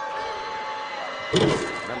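Basketball arena crowd noise with a steady mid-pitched tone over it that stops about a second in, then one short, loud thump about a second and a half in.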